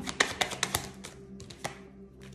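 A tarot deck being shuffled by hand: a quick run of crisp card snaps and flicks in the first second, and a few more about one and a half seconds in, over soft background music.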